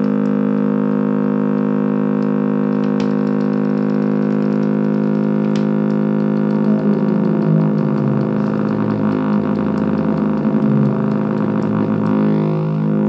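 Buzzy electronic synth drone sequenced by the uSeq, a DIY micro step sequencer, holding steady with many stacked tones. From about six and a half seconds in, the low notes start stepping up and down in pitch as the sequencer's settings are changed.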